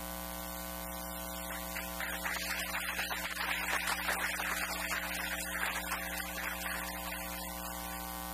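Steady electrical mains hum with a stack of even overtones. From about two seconds in to near the end, a soft rustling noise sits over it.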